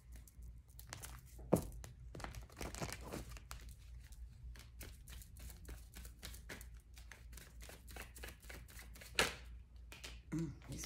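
Tarot cards being shuffled by hand: a quiet, irregular run of soft flicks and slides of card against card, with two sharper clicks, one about a second and a half in and one near the end.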